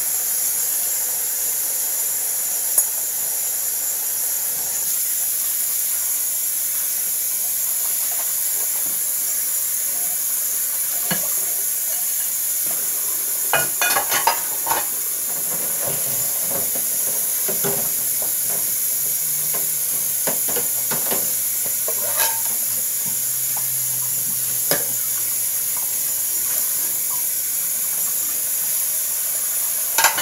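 Kitchen tap running steadily into the sink during dishwashing, with scattered clinks and knocks of dishes, a small cluster of them about a quarter of a minute in.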